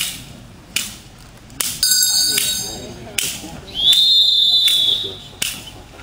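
Sharp cracks of a bite-work helper's stick striking during a Belgian Malinois bite, repeating about once a second. A whistle blows twice in the middle; the second is a long blast of about a second that rises slightly in pitch.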